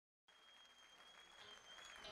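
Faint concert-audience applause fading in from silence and slowly growing louder, with a steady high whistle held over it that bends slightly near the end.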